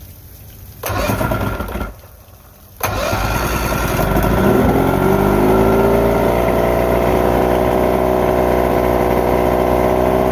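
Mercury 1500 150 hp inline-six two-stroke outboard being started. It is cranked for about a second, cranked again, and catches about three seconds in, then settles into a steady idle. The owner finds the idle too high with the timing at 5 degrees.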